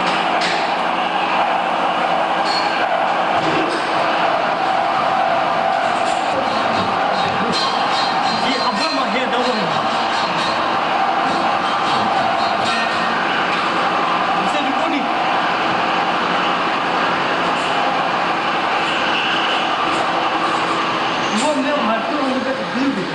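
Steady hiss of a lit oxy-acetylene torch flame heating steel plate while filler rod is fed in for gas welding or brazing, with faint voices underneath.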